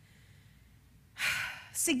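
A woman's audible breath close on a lapel microphone: a short, breathy rush about a second in, after a hush. Her speech picks up again right at the end.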